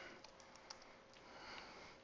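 Near silence: a few faint computer-keyboard keystrokes, then a soft sniff about a second in.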